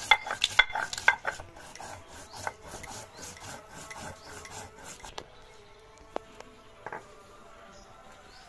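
Stone roller (nora) grinding wet spice paste on a stone slab (shil), quick back-and-forth scraping strokes that are loud for about the first second, then go on as softer rubbing until about five seconds in. After that there are only a couple of faint clicks as the paste is gathered up.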